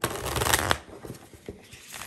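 Tarot deck being shuffled by hand: a dense rush of cards slapping and rustling against each other for most of the first second, then a few lighter flicks of cards.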